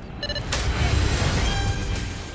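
Film-trailer sound effects: two short electronic beeps, then about half a second in a sudden rush of noise over a heavy low rumble that keeps going.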